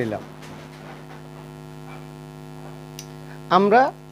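Steady mains electrical hum, a low buzz with even overtones that holds unchanged, with a short spoken word just before the end.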